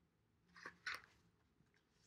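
Two brief crinkling rustles of paper being handled, about a third of a second apart, the second the louder; otherwise near silence.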